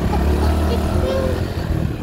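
Motorcycle engine running at low speed, a steady low drone that is strongest in the first second, while the bike rolls over a cobblestone street.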